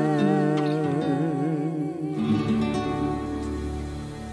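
A man's final sung note held with wide vibrato over a backing track, cutting off about two seconds in; the backing track's closing chord then rings on and fades, ending the song.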